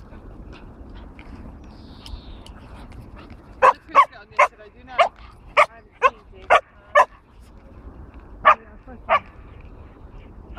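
A dog barking during play: a quick run of eight sharp barks starting about three and a half seconds in, about two a second, then two more after a short pause.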